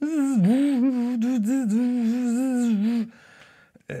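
A man's voice humming a wavering, buzzy tone that starts suddenly and cuts off after about three seconds: a vocal imitation of the robot-like sound he first made to go with his lens-cap transitions.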